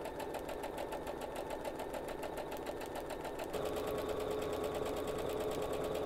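Computerized sewing machine stitching a quarter-inch seam through layered cotton strips, the needle running in a fast, steady rhythm. A little past halfway a steady hum joins in and the sound gets slightly louder.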